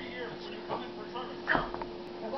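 A small dog gives one short yip about a second and a half in, a play call while inviting a game.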